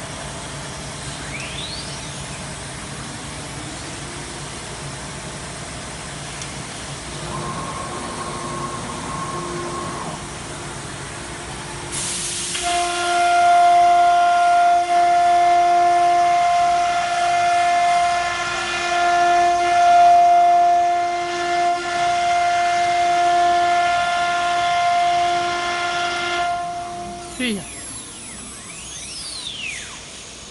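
CNC router spindle running: a loud, steady, high-pitched whine with several overtones starts suddenly about twelve seconds in and holds for about fifteen seconds. It then stops, and falling glides follow. Before that there is only a low machine hum.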